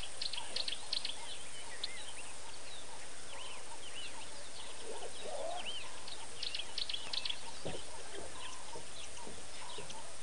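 Wild birds calling in the bush: many short, arching chirps and quick clusters of high notes, scattered through the whole time.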